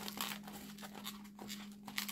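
Long latex modelling balloon being squeezed and twisted by hand into small bubbles, with faint rubbing and creaking of the rubber in short, uneven strokes.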